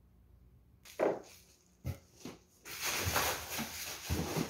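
A sharp knock about a second in and a couple of light clicks, then rustling of a cardboard box and its packing from under three seconds in as a hand reaches inside.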